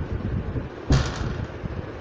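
A single sharp thump about a second in, followed by a couple of lighter knocks, over a low rumble.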